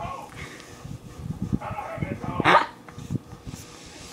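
Wordless vocal reaction from a boy eating an extremely sour candy: short murmurs and groans, then a loud, sharp yelp about two and a half seconds in.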